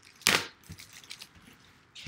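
Cellophane shrink wrap crackling as it is pulled and torn off a sealed trading-card box: one sharp crackle about a quarter second in, then faint rustling crackles.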